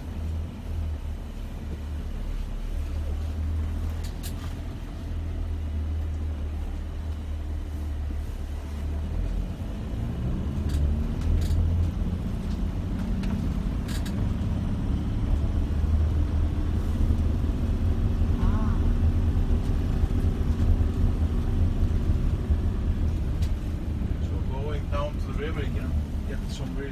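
Vehicle driving over a rough unpaved road, a steady low rumble of tyres and suspension that grows louder about ten seconds in, with a few sharp knocks from the bumps.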